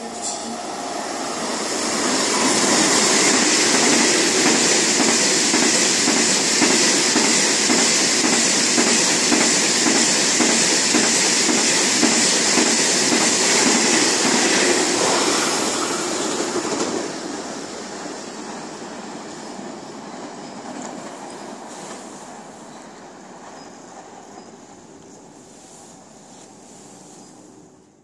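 KTX high-speed train passing through a station at speed without stopping. The noise builds over the first couple of seconds, stays loud with a fast, even clatter of wheels over the rails, drops sharply about seventeen seconds in as the end of the train goes by, then fades away.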